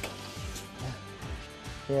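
Background music with a steady beat; a man's voice begins right at the end.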